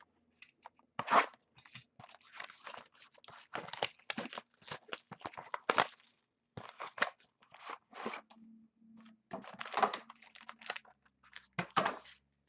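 A sealed cardboard trading-card box being opened by hand: the packaging crinkles, scrapes and tears in irregular bursts as the box is pulled apart and the contents slid out.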